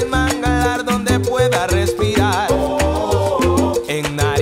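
Salsa music from a studio band of piano, bass, congas, timbales, bongó, güiro and marimba, playing a passage without lyrics over a steady, repeating bass line.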